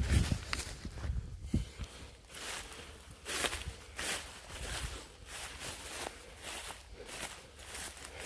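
Footsteps pushing through dense undergrowth, with plants brushing and rustling in an irregular rhythm, and a few low thumps of the handheld phone being moved in the first two seconds.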